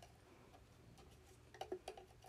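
Near silence, broken near the end by a quick run of three or four small, sharp clicks.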